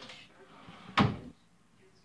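Wooden kitchen drawer pulled out by a toddler, knocking once against its stop about a second in.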